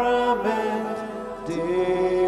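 Slow sung devotional chant with long held notes. The singing fades a little about a second in, and a new note comes in at about one and a half seconds.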